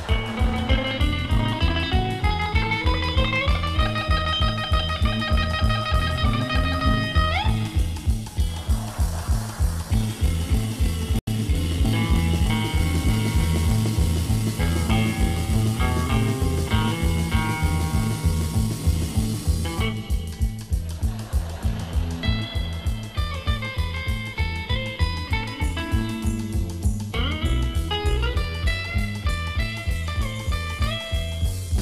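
Live electric guitar instrumental: two electric guitars, a Telecaster-style and a Stratocaster-style, play a fast duet over a steady low beat. The lead line slides up in a long rising run in the first few seconds, and climbs again near the end.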